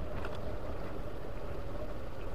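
Motorcycle riding at a steady low speed: a low rumble with a faint steady whine over it, and some wind on the microphone.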